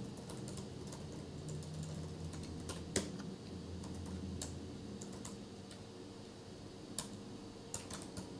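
Typing on a computer keyboard: quiet, irregular keystrokes, with a few sharper clicks about three seconds in and near the end.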